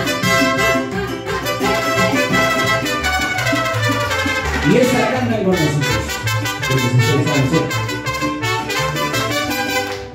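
Live mariachi band playing, trumpets over strings and guitars in a steady dance rhythm, with a sliding swoop in pitch about halfway through. Guests clap along to the beat.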